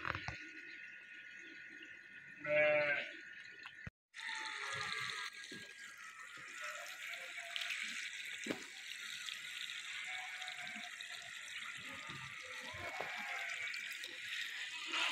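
Water running and splashing in a flooded basin as ducks bathe and dabble in it. About two and a half seconds in comes a short animal call, the loudest sound. A few fainter calls follow later.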